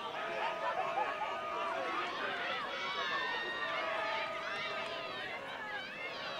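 Many voices shouting and calling at once across an outdoor ultimate frisbee field, from players on the pitch and spectators on the sideline. A faint steady tone comes in near the start, stops, and returns about two-thirds of the way through.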